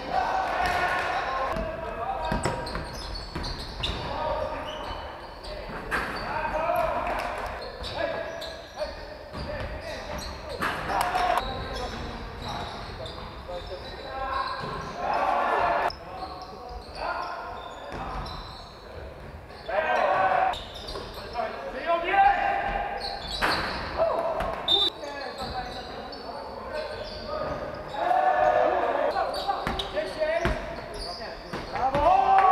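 Basketball game play in a large gym hall: a ball bouncing on a wooden court with intermittent impacts, and players' voices shouting across the hall.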